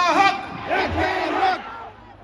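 Concert crowd shouting and yelling, with loud voices close to the microphone and no music playing; the shouts die down near the end.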